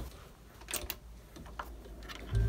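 A few faint light clicks of multimeter test probes being handled and set against a laptop motherboard: two close together a little before the middle and one more later, over quiet room tone.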